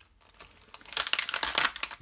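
Plastic blister packaging crinkling and crackling as it is handled and lifted off a magazine. It is faint at first, then a dense run of crackles starts just before halfway.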